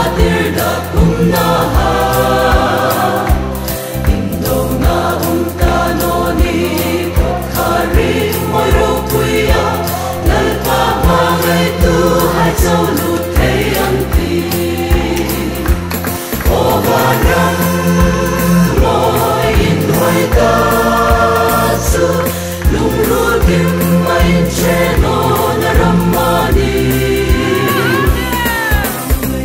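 Mixed choir of men and women singing a Hmar gospel song in harmony, over a backing track with a steady bass beat.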